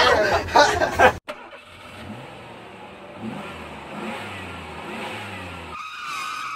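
Voices and laughter for about the first second, then a vehicle engine sound effect: the engine revs in a few rising swells, and a tyre screech starts near the end.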